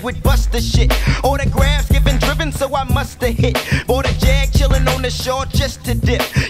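A 1990s hip hop track: rapping over a beat with a heavy bass line.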